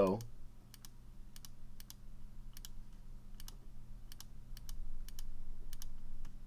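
Computer mouse clicking as notes are drawn into a sequencer grid: a string of light, irregularly spaced clicks, many in quick pairs.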